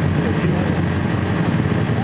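Super Stock pulling tractor's engine idling steadily at the starting line, a loud, even low drone.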